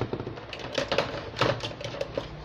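Handling noise of hard plastic: a cordless drill set down on a wooden tabletop and a plastic tool case being handled, a quick, uneven run of light clicks and knocks.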